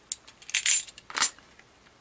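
A few short clicks and scrapes from a plastic snap-off utility knife slitting the plastic seal of a cardboard pencil box and then being set down. There are three sounds: a faint one near the start, a longer one about half a second in, and the sharpest just after a second.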